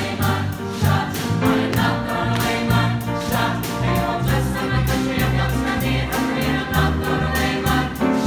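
A mixed student choir singing together over an accompaniment with a steady beat and a strong bass line.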